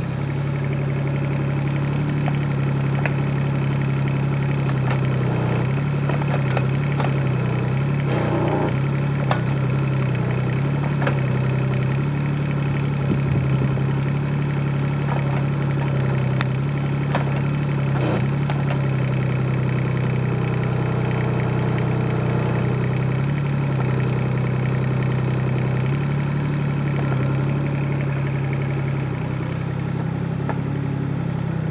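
Kubota KX36-3 mini excavator's diesel engine running steadily while the boom and bucket dig, with a few sharp clicks and knocks from the digging now and then.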